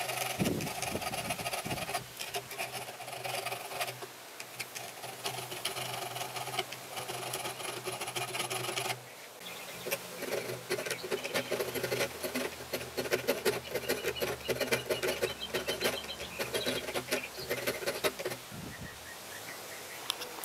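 Hand file rasping in quick repeated strokes across a metal airsoft AEG inner barrel held in a small vise, filing away the thin bridge over the hop-up window cutout. There is a brief pause about nine seconds in.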